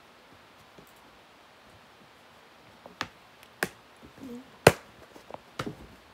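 Handling noise as a DVD case is picked out of a cardboard box: quiet for about three seconds, then a few sharp clicks and knocks of hard plastic, the loudest near the end.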